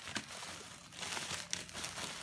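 Black plastic mailer bag crinkling and rustling as hands grip and pull it open, with a few sharp crackles of the plastic.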